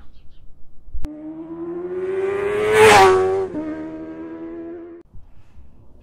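A sharp click, then a vehicle engine revving with its pitch climbing to a loud peak just before three seconds in. The pitch then drops and the sound fades, cutting off about five seconds in, like a vehicle passing by.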